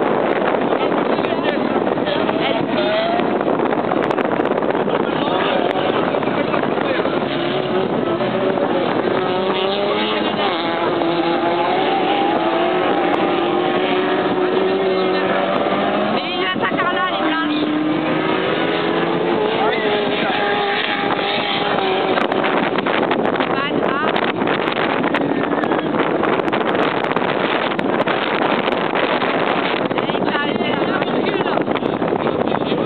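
Autocross race cars running on a dirt track, engines revving up and down as they accelerate and lift through the corners, most clearly through the middle stretch, over steady wind noise on the microphone.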